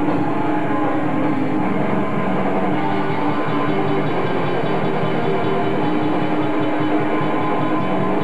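Metal band playing live: distorted electric guitars holding heavy chords over drums, a dense, steady wall of sound picked up by a camcorder microphone in the crowd.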